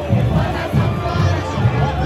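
Samba school drum section (bateria) playing, with deep surdo bass drums beating steadily, under a crowd of voices singing and cheering.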